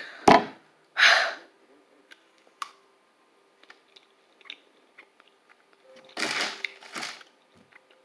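A person chewing a light, airy cookie, with small mouth clicks, and a few breathy bursts near the start and again about six and seven seconds in.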